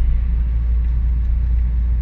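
Steady low rumble of a moving car, engine and road noise heard from inside the cabin.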